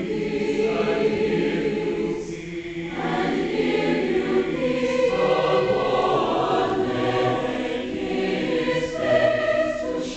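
Mixed-voice college choir singing sustained chords, with a brief break between phrases about two seconds in.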